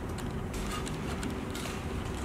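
Faint handling noises as fingers press a rubber end cap into a hole in an aluminium profile: small scattered clicks and rubbing, over a steady low hum.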